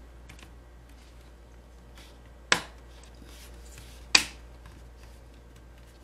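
Plastic bottom case of an Acer Predator Helios 300 laptop being pressed back on, its clips snapping into place twice, about a second and a half apart, with faint handling ticks in between.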